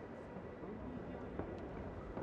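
Faint, steady background noise with a light tick about one and a half seconds in.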